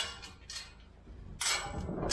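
Steel pipe gate clanking as it is unlatched and swung open: a sharp metallic clank at the start, then another clank and rattle about a second and a half in.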